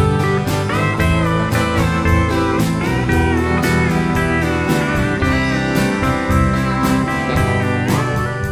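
Live country band playing an instrumental passage led by a pedal steel guitar, its notes sliding and bending over electric bass and a steady drum beat.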